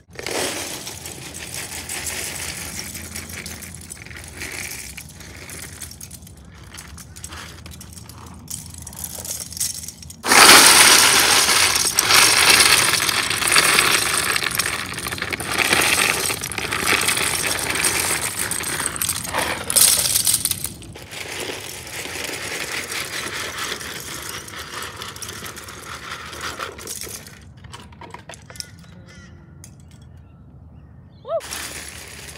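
Loose plastic LEGO bricks pouring out of a cardboard box and clattering onto a growing pile on a cloth mat. The clatter is steady, turns much louder about ten seconds in for some ten seconds, then thins out near the end.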